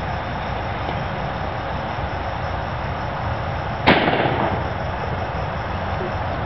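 A miniature black-powder cannon firing: one sharp bang about four seconds in, after its fuse has burned down, over steady background noise.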